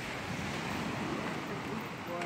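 Steady wash of ocean surf, with some wind on the microphone.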